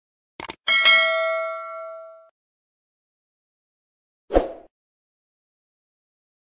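Subscribe-button animation sound effects: a quick double mouse click, then a bright bell ding that rings out and fades over about a second and a half. A short pop follows about four seconds in.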